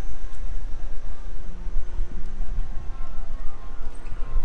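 Low wind rumble on the microphone and road noise from riding an electric unicycle along a paved street, a loud steady rumble throughout.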